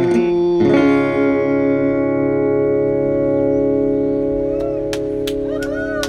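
Acoustic guitar strummed, then a chord struck about a second in and left to ring, slowly fading.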